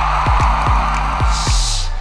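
Background music with a steady beat, about four kick-drum strikes a second over a held bass note, with a rushing noise in the middle range and a short hiss near the end.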